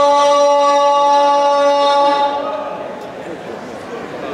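A man's voice holding one long, steady sung note through a hall microphone, cutting off a little over two seconds in; after it, indistinct voices in the hall.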